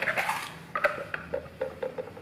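Light clicks and taps of hands handling a scooter's front wheel and tyre valve, after a brief rustle at the start.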